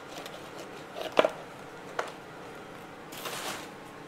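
Potting soil being picked and crumbled off a plant's root ball over a plastic tub: a few sharp little taps of soil landing, then a brief rustle.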